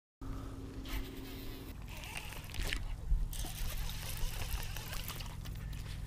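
Water trickling and splashing around a boat on a pond, with low wind rumble on the microphone and a few light knocks.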